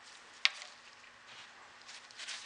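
Quiet handling noises from hands working a small bottle cap and a plastic cup of drained fluid: one sharp click about half a second in, then faint soft rustles.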